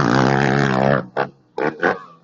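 A motocross bike engine revving hard as it rides past close by, its pitch wavering, then cutting off about a second in, followed by three short throttle bursts.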